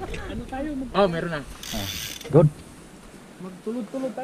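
Mountain bike rear freehub ratcheting in a brief fast buzz of clicks for about half a second, as a wheel freewheels, a little under two seconds in.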